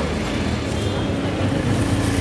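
Street traffic: a motor vehicle's engine running close by, a steady low rumble.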